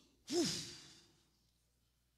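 A woman blowing a long, breathy 'whew' into a handheld microphone. It starts strong about a third of a second in and fades away over about a second.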